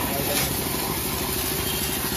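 A hard water jet from a hose spraying onto a motorcycle's rear wheel and chain, a steady hiss with a fast low pulsing underneath.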